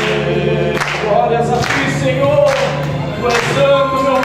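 A small group of men singing a Portuguese worship song, led by one voice amplified through a microphone, over a regular beat a little faster than once a second.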